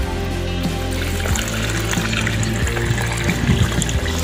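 Background music with a steady beat, under water pouring and trickling into a bowl over a mound of seitan dough.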